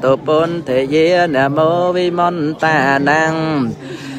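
A solo voice singing a Buddhist chant in long, wavering melodic phrases, with a short pause near the end, over a steady low drone.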